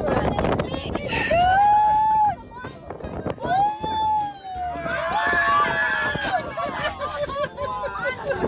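Excited people shouting long drawn-out calls while a red snapper is reeled to the boat, with the fish splashing at the surface about halfway through.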